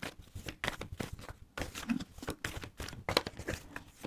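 A deck of tarot cards being shuffled by hand: a fast, irregular run of soft card clicks and rustles.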